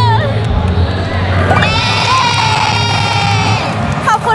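A woman's high voice holding one long drawn-out note for about two seconds, starting a little before halfway, over a crowd in a hall.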